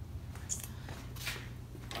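Quiet room tone with a steady low hum, and two faint, brief rustles or scuffs from handling and movement about half a second and just over a second in.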